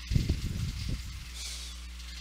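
A short burst of low rumbling noise on the microphone lasting about a second, then only a steady low electrical hum.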